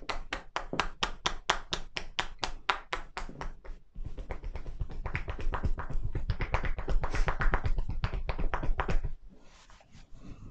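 Hands drumming on a person's shoulders in percussion massage (kata-tataki): a steady run of about five taps a second, a brief pause about four seconds in, then a faster, heavier run of thudding strikes that stops about a second before the end.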